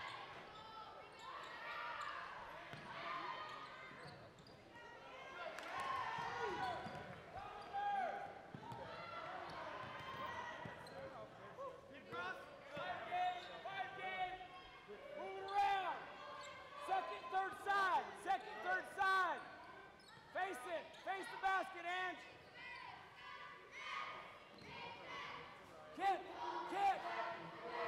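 Basketball game play on a hardwood gym floor: a ball dribbled, sneakers squeaking in short, quick bursts as players cut and stop, and players and spectators calling out. The squeaks come thickest in the middle of the stretch.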